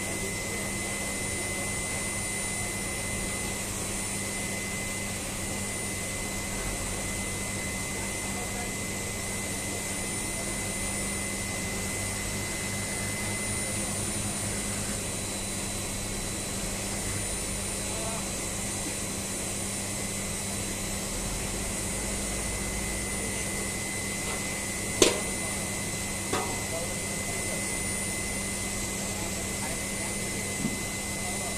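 Steady drone and hiss of power-plant ash-handling machinery, with a low hum and thin high whines. One sharp knock comes near the end, and a smaller one follows just after it.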